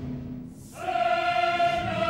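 Opera choir singing: a held note fades away, and about a second in the choir enters on a long sustained chord.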